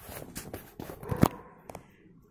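Aluminium foil crinkling as it is wrapped by hand around a rolled flatbread wrap: a run of irregular crackles, with one sharper crack a little after a second in.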